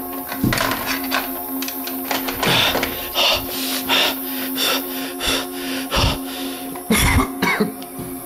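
Background music with a steady low drone, over irregular knocks and rubbing from the camera being handled and moved.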